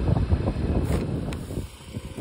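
Wind buffeting an unshielded microphone, a gusty low rumble that eases off near the end.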